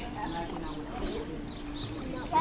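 Faint voices of people in a swimming pool, over a steady low hum.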